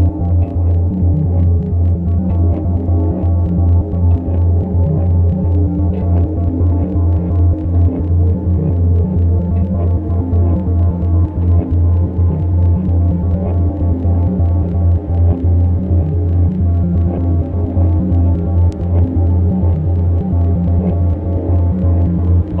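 Electronic music: a steady, loud low drone with a fast throbbing pulse running through it, and a stack of held tones above.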